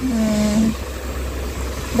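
A person's voice holds one drawn-out syllable for under a second. After it a low, steady rumble continues.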